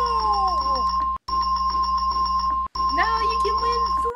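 Electronic sound effect: a steady high beep tone held over a low droning pulse, with sliding voice-like wails over it. It drops out abruptly twice, about a second in and again under three seconds in.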